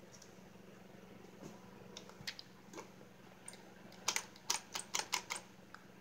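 Hard plastic of a toy fire truck clicking and tapping under a hand, a few soft ticks at first, then a quick run of sharp clicks over the last two seconds as its side button is pressed. No siren or light-and-sound effect plays, because the battery has been taken out.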